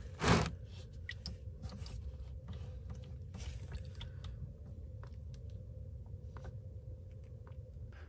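Gear oil draining from a manual transmission's drain hole into a drain pan: a faint trickle with scattered small ticks and crackles over a low steady hum. A short burst of noise comes about a third of a second in.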